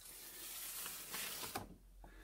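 A sheet of printing paper being peeled off a tacky, acrylic-painted Gelli printing plate: a faint, soft, hissing rustle for about a second and a half that then fades out.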